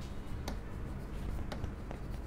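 Marker pen writing on a board: faint scratching of the tip with a few light clicks as it touches and lifts.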